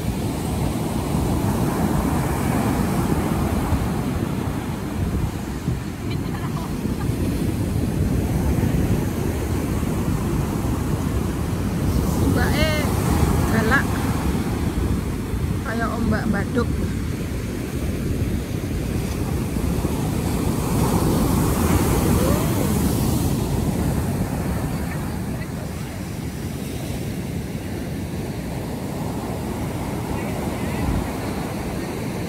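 Heavy ocean surf breaking and washing up the beach: a continuous rush of waves that swells louder a couple of times, with wind buffeting the microphone.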